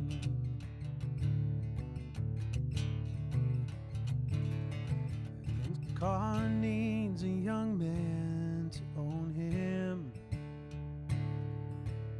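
Acoustic guitar strummed in a steady rhythm. A man's singing voice joins about halfway through.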